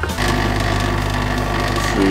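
Lavazza capsule coffee machine's pump starting about a fraction of a second in and buzzing steadily as it brews, a loud, even mechanical hum.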